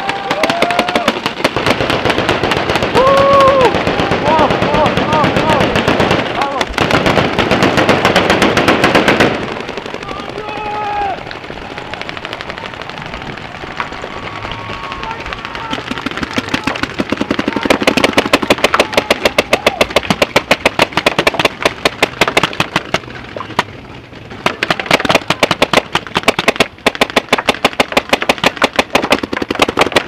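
Many paintball markers firing at once in a dense, rapid crackle of shots, with players shouting in the first few seconds. The firing thins about ten seconds in, then comes back in fast, close strings of shots.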